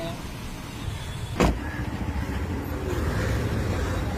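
Car engine running with a steady low rumble of street traffic, and a single sharp knock about a second and a half in.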